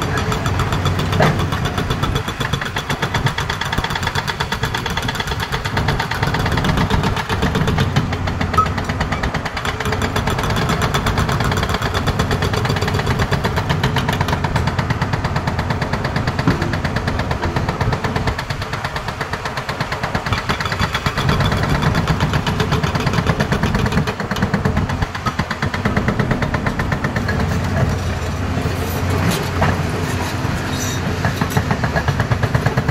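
A hydraulic rock breaker on a JCB tracked excavator hammering rapidly and continuously into a rock face, with the excavator's diesel engine running underneath.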